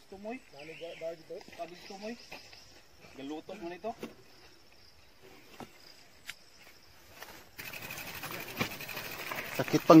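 People talking briefly, over a steady high insect drone of the kind crickets make. About three-quarters through, the sound changes suddenly to a steady outdoor hiss.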